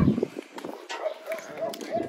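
A dog barking faintly.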